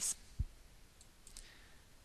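A single soft low thump, then a few faint clicks, over quiet room tone.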